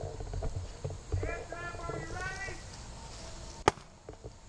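Distant voices talking or calling over a low rumble, with one sharp click about three and a half seconds in.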